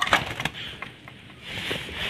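Sooty-headed bulbul flapping its wings hard as it fights a hand, a quick clatter of soft clicks and flutter that is loudest at the start.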